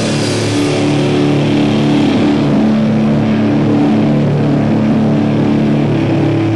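Loud live rock band playing, with distorted electric guitars holding long chords over drums.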